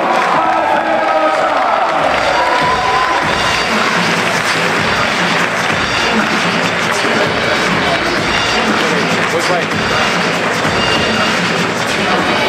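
Arena crowd cheering and applauding over loud music. The cheering swells into a dense roar about three seconds in.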